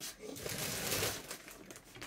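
Rustling and crumpling as garment covers and bags are handled, loudest about a second in and then fading.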